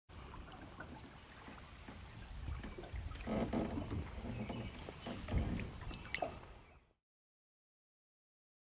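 Water lapping and gurgling against a boat hull, over an uneven low rumble, with a few sharp knocks; the loudest knock comes about five seconds in. The sound cuts off suddenly near the end.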